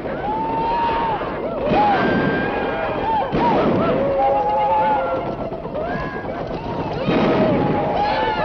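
Several men shouting and whooping, with three gunshots about two, three and a half and seven seconds in.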